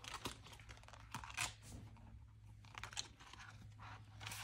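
Clear vinyl snap-button cash envelope being handled at a desk: faint plastic crinkling and rustling, with a few louder crinkles.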